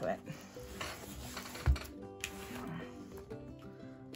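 Background music playing over handling sounds: a cloth bag rustling as a rolled canvas is slid out of it onto a wooden desk, with one soft knock a little under two seconds in.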